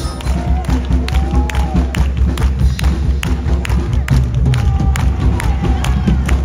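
Marching show band music driven by percussion: a steady heavy low beat with many sharp drum and clap hits, while a crowd cheers and shouts.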